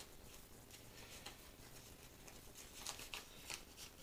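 Near-silent room tone with faint rustling of small parts handled in the hands, and a few light clicks about three seconds in.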